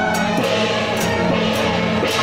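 Temple procession band music: several suona-like reed horns playing a held melody together, with cymbal crashes every half second or so.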